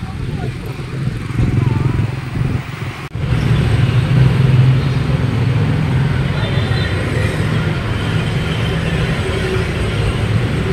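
Outdoor ambience with low wind rumble and people's voices, which cuts off abruptly about three seconds in. Steady street traffic noise of scooters and motorbikes takes over and runs louder.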